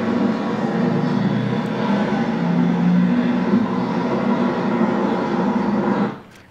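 A steady, engine-like drone, heard as the sound of a recording played back over the hall's speakers, that cuts off suddenly at the end.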